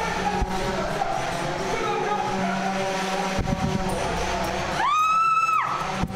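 A single high-pitched scream about five seconds in, rising sharply, held for most of a second, then dropping away, over a steady noisy din with background music.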